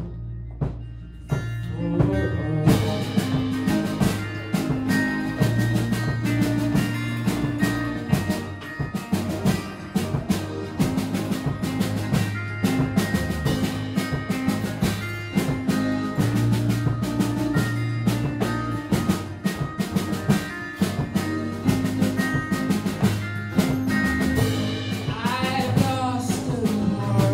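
Indie pop band playing live: quiet held notes at first, then the drum kit and full band come in about two seconds in and carry on with a steady beat.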